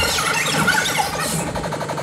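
Sound-system effect over the music: a wavering, siren-like squeal over a rapid rattle. The music's bass fades and cuts out near the end.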